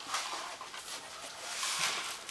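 Cassette deck of a Toshiba SM-200 music centre running after a transport button is pressed: a faint steady hiss with light mechanism noise. The owner finds its drive belt a bit slippery.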